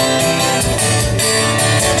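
Acoustic guitar strummed in a steady rhythm, with no singing over it.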